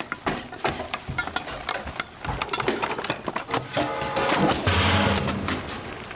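Cookware clattering: a spatula repeatedly knocking and scraping against a pan on the stove, in quick, irregular clicks and bangs, with music underneath.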